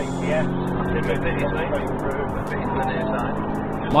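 Engine and road noise of a police Volkswagen Golf R in high-speed pursuit, heard from inside the cabin: a steady engine drone.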